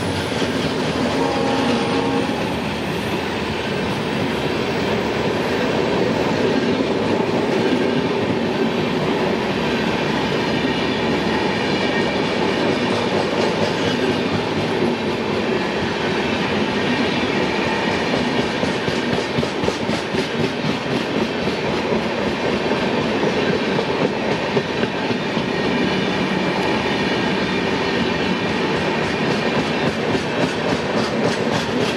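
Indian Railways LHB passenger coaches of a Humsafar Express rolling past at speed: a steady rumble of steel wheels on rail with a rhythmic clickety-clack. A pitched engine drone fades out in the first couple of seconds as the locomotive pulls away.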